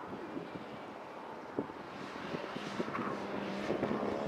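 Nissan Skyline's engine running as the car approaches and comes through the corner, growing louder from about halfway through, with wind noise on the microphone.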